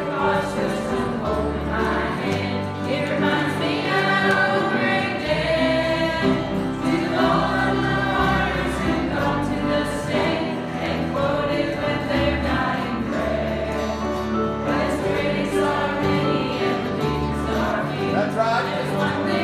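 Mixed youth choir singing a gospel song in unison and parts, over instrumental accompaniment with sustained bass notes that change every second or two.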